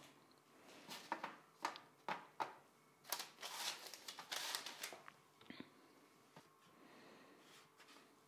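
Faint rustling of baking paper and soft taps as slices of chilled cookie dough are picked up and laid on a parchment-lined baking sheet. The noises come in scattered short bursts over roughly the first five seconds.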